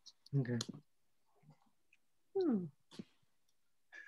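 Speech only: a spoken 'okay', then a falling 'hmm' about halfway through, with a couple of faint clicks near the end.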